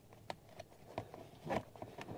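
A few faint plastic clicks and taps from fingers handling a wiring connector on a plastic under-dash trim panel.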